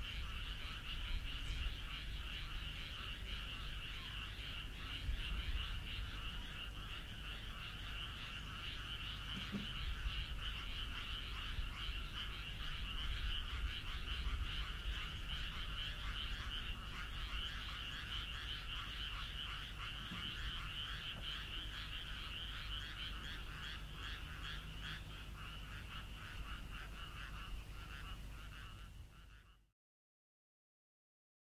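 A dense chorus of many frogs calling together, a steady mass of rapid pulsed croaks, over a low rumble; it fades out just before the end.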